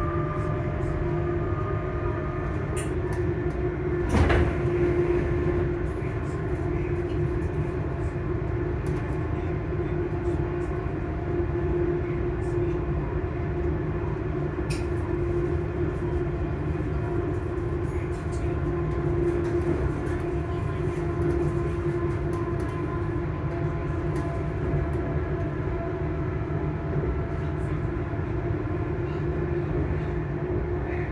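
Hitachi Class 385 electric train's traction motors whining steadily beneath the floor while the train runs, over a continuous rumble of wheels on the rails. One sharp knock about four seconds in.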